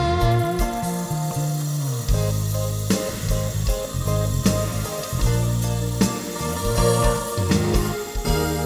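Live norteño band playing an instrumental passage: a saxophone melody in long held notes over a moving bass line and drums.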